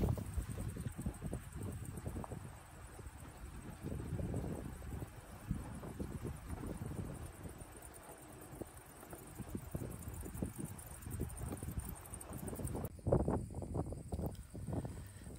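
Wind buffeting the microphone, a low uneven rumble that swells and fades in gusts. It changes character about a second before the end.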